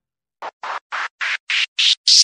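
An electronic transition sound effect: after a brief silence, a run of short, stuttering noise bursts, about four a second, each higher in pitch and louder than the one before.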